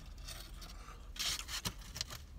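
Biting into and chewing a slice of pizza, with a short crunch of the crust a little over a second in, followed by two small clicks.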